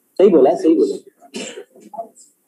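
A person clearing their throat: a longer rasp, then a shorter, breathier one about a second later.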